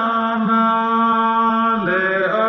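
A singer holding one long, steady sung note in a Pahari folk song, the pitch dipping as the next phrase begins near the end.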